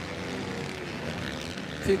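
Motocross bike engines running at a distance: a steady drone with a faint, even pitched hum.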